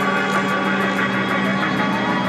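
Background music for a catwalk: a long held low note under other instrument lines, with a steady beat of high ticks.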